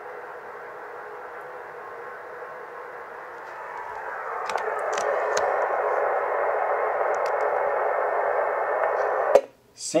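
Bitx40 40-metre SSB transceiver in receive on an empty frequency, playing a steady, narrow hiss of band noise through its speaker while no station answers the CQ call. The hiss grows louder about four seconds in, with a few faint clicks, and cuts off suddenly with a click near the end as the radio is keyed to transmit.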